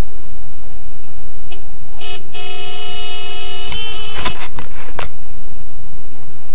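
Car horn: a short toot about two seconds in, then a held honk lasting about a second and a half, over a steady low engine and traffic rumble. Several sharp knocks follow just after the honk ends.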